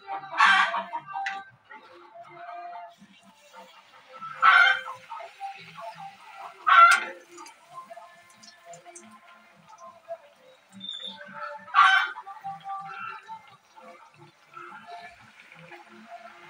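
Golgappa puris frying in hot oil in a steel kadhai, a faint sizzle between louder sounds. Four short, loud, pitched calls break in, about half a second, four and a half, seven and twelve seconds in.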